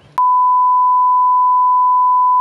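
A steady 1 kHz test-tone beep, the tone that goes with television colour bars. It cuts in with a click just after the start and holds one pitch at full loudness.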